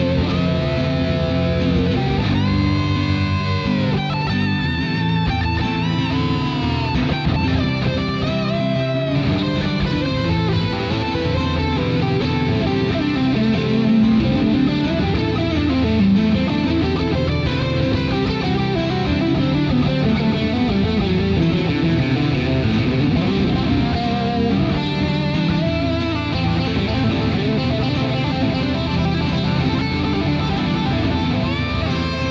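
Instrumental break of a rock song: an electric guitar lead with bent, wavering notes over strummed rhythm guitar and a full band backing. The lead is busiest in the first ten seconds and again a little before the end.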